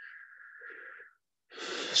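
A man's breathing in a pause between spoken phrases: a thin, wheezy breath lasting about a second, then a short airy inhale just before he speaks again.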